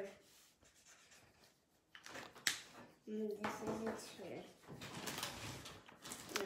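Quiet at first, then drawing supplies being handled: a single sharp click about two and a half seconds in, followed by rustling under soft, quiet voices.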